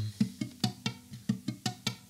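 Acoustic guitar played with the fingers: a quick run of short, crisp plucks, about five a second, each with a sharp percussive attack.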